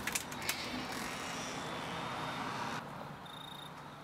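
A door being unlatched and opened: a few sharp clicks of the latch, then the door swinging with a rasping creak that stops suddenly near the three-second mark.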